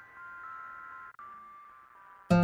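Faint, soft music: a few high held notes that step from one pitch to another, with a brief dropout about a second in.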